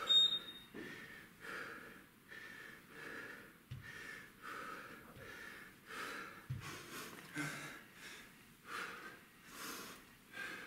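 A man breathing hard in short, rhythmic puffs, about one every three-quarters of a second, from the exertion of heavy single-arm kettlebell rows. Two dull low thumps come near the middle.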